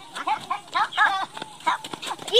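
People's voices in short, high-pitched cries and calls, several in quick succession.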